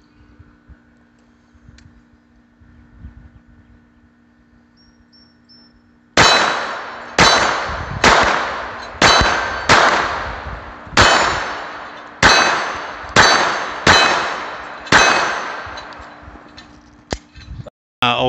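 Ruger LCP II .22 LR pistol firing ten shots at a steel target, roughly one a second starting about six seconds in, each crack followed by a ringing clang from the steel plate.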